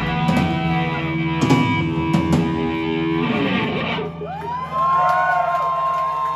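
Live rock band with electric guitars, bass and drums ringing out on a closing chord, with a few cymbal or drum hits. About four seconds in, most of the band cuts off and high wavering tones carry on over a low held note.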